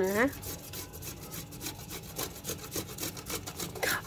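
Tomato being grated by hand on a metal box grater: a quick, even run of rasping strokes.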